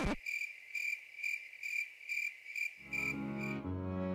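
Cricket chirping sound effect: a regular string of short high chirps, about three a second, the comic 'awkward silence' cue. Low background music fades back in near the end.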